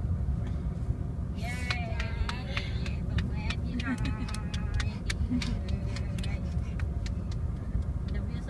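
Steady low road rumble inside a moving car's cabin, with a scatter of light clicks through the middle of the stretch.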